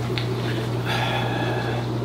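Steady low hum of running aquarium equipment (air pumps and filters) in a room full of fish tanks, with a faint click just after the start and a faint high whine joining about a second in.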